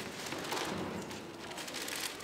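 Plastic ziplock bag crinkling and rustling as it is opened and handled.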